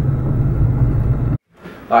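Steady low road and engine rumble inside a car's cabin as it drives slowly downhill, cutting off abruptly about one and a half seconds in.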